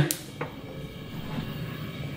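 Lit gas hob burner hissing softly and steadily, with a single light click about half a second in.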